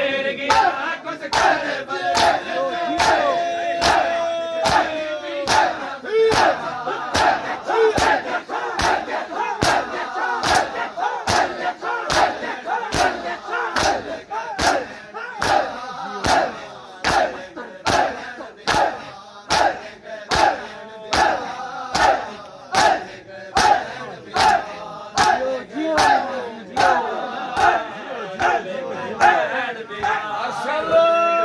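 A crowd of men beating their bare chests with open hands in unison (matam), sharp slaps falling in a steady rhythm of roughly one a second, with the crowd shouting and chanting between the strikes.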